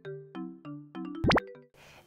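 Short cheerful music jingle of quick plucked notes, about three a second, topped by a loud, fast rising sweep in pitch about a second and a quarter in; it then cuts off to faint room tone.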